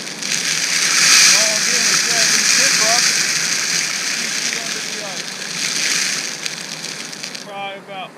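Wind buffeting the microphone: a loud crackling hiss that cuts off suddenly near the end, with faint speech underneath.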